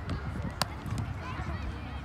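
Footballs being kicked and bounced on artificial turf by several players: a run of soft, irregular thuds, with one sharper knock a little over half a second in, over indistinct voices.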